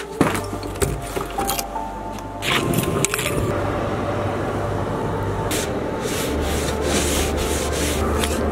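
Snow and ice being scraped and brushed off a car's windows: continuous rough scraping on glass with a few knocks in the first three seconds, over background music.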